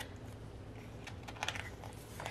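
Faint handling of a photobook's paper pages as one is turned, with a few light ticks about a second and a half in.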